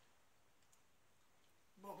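Near silence: room tone with a single faint click about two-thirds of a second in, then a man's voice begins at the very end.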